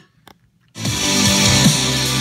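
A House of Marley display speaker starts playing a demo track about three-quarters of a second in, after a brief near-silence: loud electronic music with low bass notes sliding downward, played at maximum volume.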